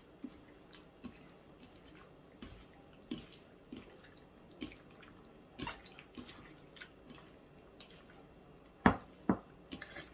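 Bare hands mixing raw fish pieces, onion and chili in vinegar in a bowl: scattered soft wet squelches and clicks, with two sharper clicks close together a little before the end.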